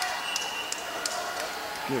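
Background murmur of a crowd in a gymnasium, with a faint steady high tone lasting about a second.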